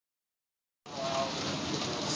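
Heavy rain falling on pavement, a steady hiss that starts just under a second in.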